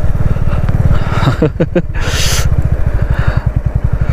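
Motorcycle engine running steadily under way, a rapid even exhaust pulse. A brief voice comes about a second and a half in, and a short rush of hiss follows just after.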